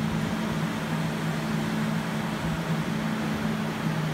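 Steady machine hum: a constant low two-note drone under an even fan-like hiss, unchanging throughout.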